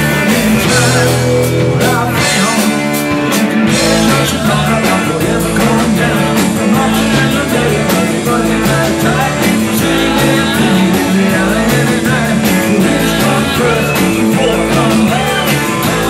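Rock band playing live, recorded from the mixing desk: electric guitars, bass guitar and drum kit at a steady, driving pace, with singing.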